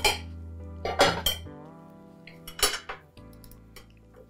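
Metal cutlery clinking against plates and bowls as people eat: several separate clinks, under soft background music with a low held drone.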